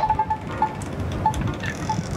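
VanMoof S4 e-bike's anti-theft alarm sounding extremely softly: a few short beeps at one pitch, unevenly spaced, over wind noise on the microphone.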